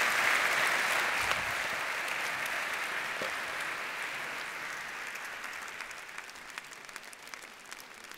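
Large audience applauding. The clapping is loudest at first and slowly dies away.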